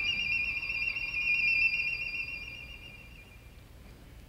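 Solo violin holding a single very high note with vibrato, alone, fading away over about three seconds until it is barely heard.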